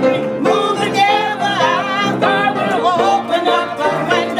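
Voices singing a closing church song over instrumental accompaniment.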